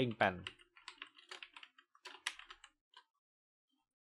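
Typing on a computer keyboard: a quick run of key presses that stops about three seconds in.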